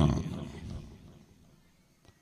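The tail of a man's loud, raised speaking voice, trailing off with echo over about a second and a half, then near silence.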